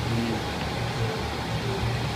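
Steady low background hum with a slight pulsing.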